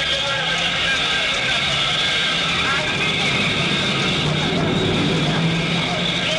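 Steady, dense street noise: many voices mixed with the running of vehicle engines.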